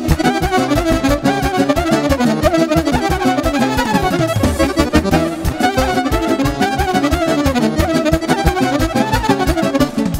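Instrumental Romanian folk dance music for a hora, loud and steady: a fast-running lead melody over a regular dance beat, with no singing.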